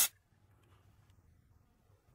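Canned compressed air hissing through its extension straw, cutting off suddenly right at the start; then near silence, room tone.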